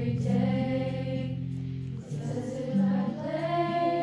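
A children's choir of girls singing in unison, with sustained low accompaniment notes under the voices.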